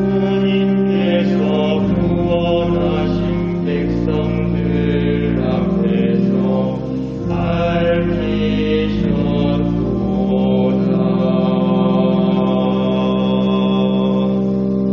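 Slow sung chant of the responsorial psalm, voices holding long notes over sustained accompaniment chords that change every couple of seconds.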